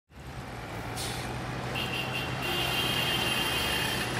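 Steady road-traffic-like ambient noise with a low hum, fading in at the start. A high steady whine joins about two seconds in.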